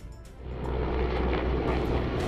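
Low, steady rumble of a military helicopter flying, rising about half a second in, with background music over it.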